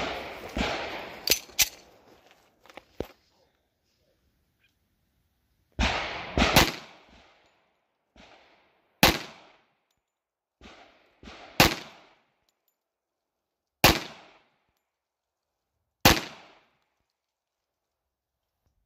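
Tisas 1911A1 .45 ACP pistol firing slow, aimed single shots: about a handful of sharp reports a couple of seconds apart, each with a short echo, after a pause of a few seconds near the start. A few fainter pops and clinks fall between them.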